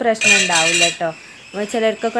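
Stainless steel kitchen utensils clattering and ringing for just under a second, metal knocking on metal, with a woman talking over it.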